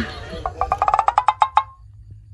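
A comedy sound effect: a quick run of about a dozen sharp pitched taps, roughly eight a second, ending in a brief ringing note.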